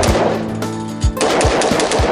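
Several rifle shots fired in quick succession, under background music.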